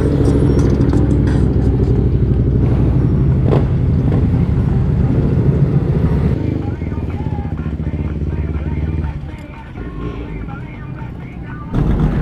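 Motorcycle V-twin idling steadily at a standstill, close by; the engine sound drops away sharply about nine seconds in. This is most likely the rider's own air-cooled Harley-Davidson Nightster.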